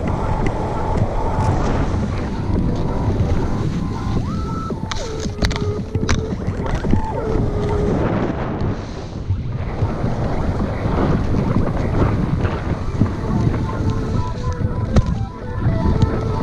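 Wind buffeting an action camera's microphone during a fast run down groomed snow, with the scrape of edges on the snow through the turns.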